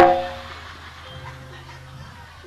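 Gamelan accompaniment: a single loud stroke on tuned metal instruments rings out and fades over about half a second, followed by quieter sustained tones and a low held note.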